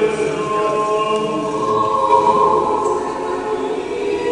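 Unaccompanied church choir singing Orthodox liturgical chant, with long held notes.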